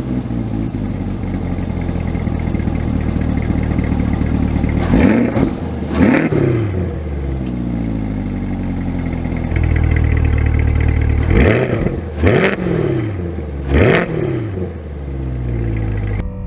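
The 6.2-litre V8 of a 2023 Chevrolet C8 Corvette Z51 idling through its exhaust. It is revved in five short throttle blips, two about a third of the way in and three in quick succession later on, each rising and dropping back to idle.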